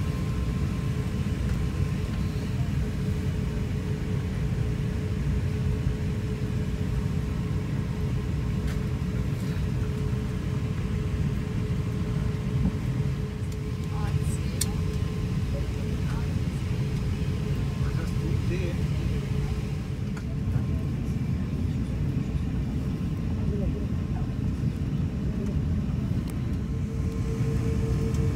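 Steady low rumble of an Airbus A350 cabin's air conditioning while the airliner is parked at the gate, with a constant hum over it and a few faint clicks.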